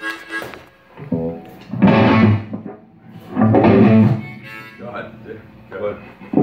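Harmonica played in short wailing phrases, three in a row, over electric guitar in a small band jam.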